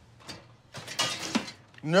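Metal oven rack and roasting pan being pulled out of a wall oven: a short scraping, rattling slide about a second in.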